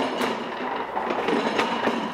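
A mobile workbench loaded with cedar slats rolled on its casters across a concrete floor: a steady rolling rumble with loose clattering knocks from the boards, easing off near the end.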